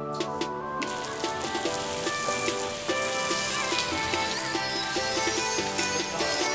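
Background music with a steady beat. From about a second in, water from a garden hose sprays onto a horse's coat as a hiss under the music.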